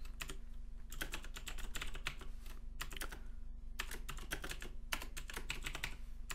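Typing on a computer keyboard: quick runs of key clicks broken by short pauses.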